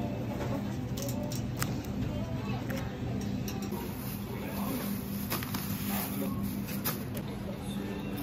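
Supermarket ambience: a steady low hum, as from the refrigerated display cases, with scattered light clicks and rustles of plastic bags and packaged meat being handled in a metal shopping cart.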